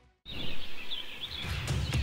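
A moment of silence, then birds chirping over an outdoor ambience, with a low thudding music beat coming in about a second and a half in.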